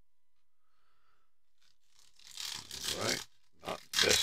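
Near silence for about two seconds, then the crinkle and tear of a foil trading-card pack wrapper being pulled open by hand, in irregular noisy bursts that get louder toward the end.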